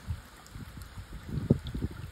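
Small solar-powered bird bath fountain splashing and trickling water into the basin, with wind rumbling on the microphone and a brief bump about one and a half seconds in.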